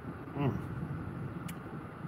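Steady low hum of a car running, heard inside its cabin. A man gives a short "mm" about half a second in, and there is a single sharp click about a second and a half in.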